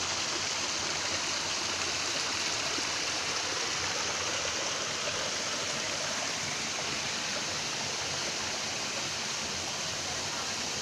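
Creek water running over rocks, a steady, even rush.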